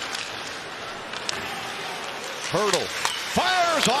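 Ice hockey arena sound: a steady crowd hum with a few sharp clacks of stick and puck. About two and a half seconds in, an excited voice breaks in with short calls that rise and fall in pitch, and the level goes up.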